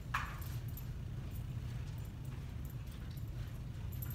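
A small dog working a scent search on a leash: faint jingling of its collar tags and light high clicks, with one short breathy burst just after the start. A steady low room hum runs underneath.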